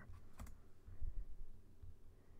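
A few keystrokes on a computer keyboard while code is edited, with sharp key clicks about half a second in and softer knocks later.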